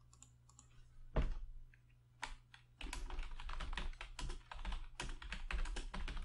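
Computer keyboard being typed on: a single keystroke about a second in and another a second later, then a quick, continuous run of key presses from about three seconds in.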